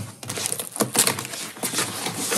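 A cardboard parcel being cut open with a knife: irregular scratchy strokes and crackles of the blade through packing tape and cardboard.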